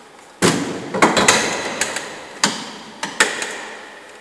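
Metal frame of a Thule tow-ball bike carrier clanking and rattling as it is handled and set onto the car's tow ball: one heavy clank about half a second in, then four or five more knocks, each ringing briefly.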